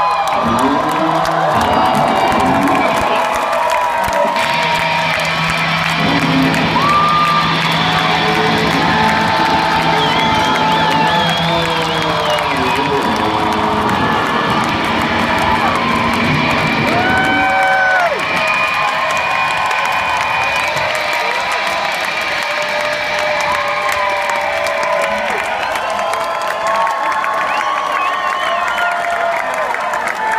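An arena crowd cheering and whooping over live rock music as a concert's last song ends. A held low note runs through the first half, and the low end of the music falls away a little past halfway while the cheering goes on.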